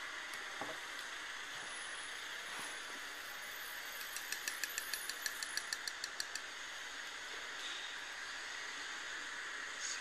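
Steady hiss, with a quick run of light, evenly spaced ticks for a couple of seconds in the middle.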